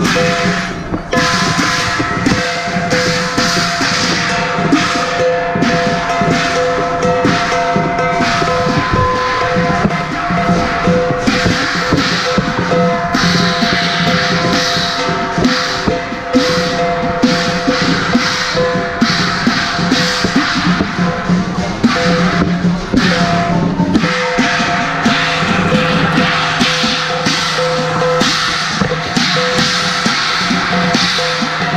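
Chinese drum, gong and cymbals playing for a qilin dance: loud, continuous strikes in a steady driving rhythm, with ringing tones held underneath.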